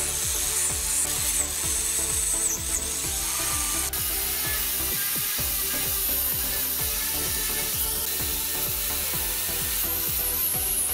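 Electric angle grinder running steadily as its abrasive disc grinds rust and old paint off a rusty spoked wheel rim, with a continuous high, hissing grind.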